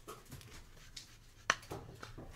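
A trading card being slid into a rigid clear plastic holder: faint scraping of card and plastic, with one sharp click about one and a half seconds in.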